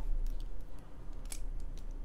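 Low steady hum with a few faint, short clicks, the clearest a little over a second in.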